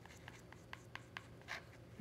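Paintbrush dabbing and stirring water into tube watercolors in a plastic palette: a string of faint light taps and scrapes.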